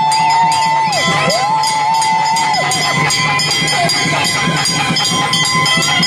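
Festival drums beating a fast, steady rhythm amid a noisy crowd, with a high wailing tone held in two long notes, each sliding up at the start and dropping away at the end, in the first few seconds.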